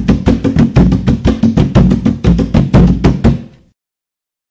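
Drum percussion music: a fast, even run of hand-drum strikes, several a second, that dies away about three and a half seconds in.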